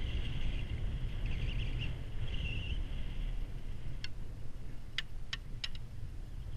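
Onboard ride on a four-seat chairlift: a steady low rumble of wind and chair travel, with a faint high squeaking for the first half and four sharp clicks close together near the end.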